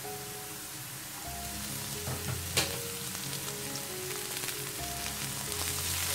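Diced potatoes frying in hot oil in a nonstick pan: a steady sizzle that grows a little louder toward the end, with a single sharp click about two and a half seconds in.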